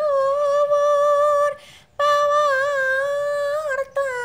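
Background song: a woman's voice singing two long held notes with a slight waver, broken by a short pause about halfway through.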